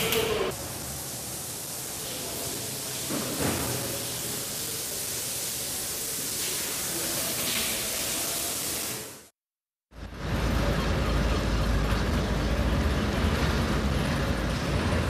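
Steady hiss that cuts out for under a second about nine seconds in, followed by a rumbling, low-heavy background noise.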